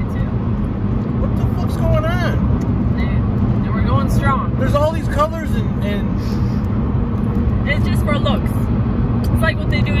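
Steady low hum of a car with its engine running, heard from inside the cabin, with a few short bursts of voice over it.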